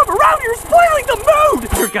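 A high-pitched voice making wordless vocal sounds that slide up and down in pitch, over a low steady hum that cuts off abruptly near the end.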